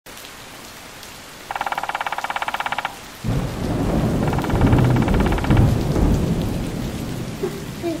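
Steady rain with a clap of thunder that rumbles in about three seconds in and slowly dies away. Before it comes a rapid run of taps, about fourteen a second, lasting just over a second, with a fainter run during the thunder.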